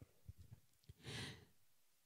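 Near silence with a few faint low taps, then a soft breath drawn close to a handheld microphone about a second in.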